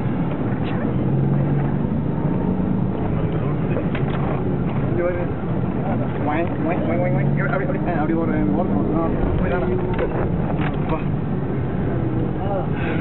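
A 4x4's engine and tyres driving over sand dunes, heard from inside the cabin as a steady loud rumble with a low engine note. Passengers' voices and cries rise over it in the middle.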